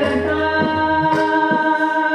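A female Hindustani classical vocalist sings raag Bairagi Bhairav, holding long notes with a change of pitch about halfway through, over harmonium accompaniment and light tabla strokes.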